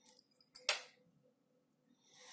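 A small metal-handled precision screwdriver set down on a hard surface: a few light metallic ticks, then one sharp ringing clink well before a second in.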